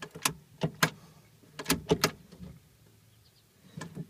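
FJ40 Land Cruiser brake pedal and master cylinder pushrod being worked, giving a string of sharp mechanical clicks and knocks in uneven groups over the first two seconds and one more near the end.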